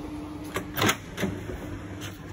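Ford XB Falcon ute's engine idling with a low steady rumble, running cleanly on its rebuilt Holley carburettor with no rattles or ticks. Three sharp knocks of handling sound over it in the first second and a half.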